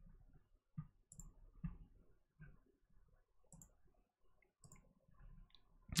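Faint, scattered clicks of a computer mouse, about half a dozen spread unevenly over a few seconds.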